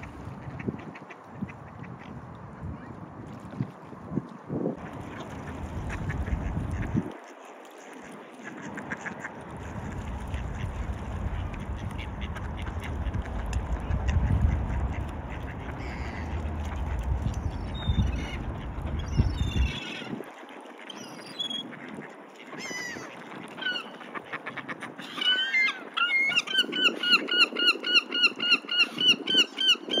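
Wind rumbling on the microphone for the first two-thirds or so. Then mallards quacking, first in scattered calls and then, near the end, in a loud, fast, even run of about four or five quacks a second.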